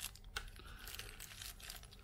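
Faint rustling and light clicks of hands handling a small white cardboard box and a wrapped flash drive while packing the drive into the box.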